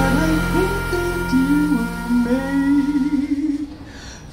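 Live jazz band closing a tune: a low chord is held and rings out while a slow melodic line with vibrato plays over it. A second, higher note joins about halfway through, and the sound dies down near the end.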